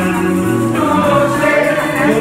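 Live acoustic-electric band music with singing voices: a small strummed guitar, electric bass and hand percussion playing together.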